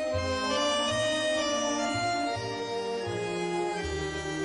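Argentine tango music: a reed instrument holds and changes sustained melody notes over a pulsing bass line.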